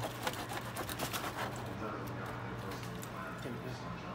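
A knife and tongs clicking and scraping against a foil-lined pan as barbecue ribs are cut, in quick sharp ticks during the first second or so. Voices talk in the background.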